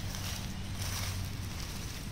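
Steady outdoor background noise with a low, even hum underneath and no distinct event.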